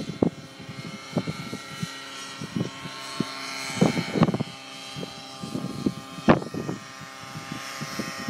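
Align T-Rex 700 radio-controlled helicopter flying overhead: a steady whine from its rotor and drivetrain, its higher pitch shifting a little. A few short thumps break through, the loudest about six seconds in.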